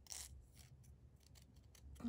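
Small scissors making a series of faint, quick snips as they cut around a printed paper decal, the first snip the loudest.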